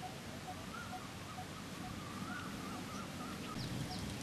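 Birds calling outdoors. One repeats a short single note about twice a second, another sings a wavering phrase through the middle, and a few quick rising chirps come near the end, all over low background noise.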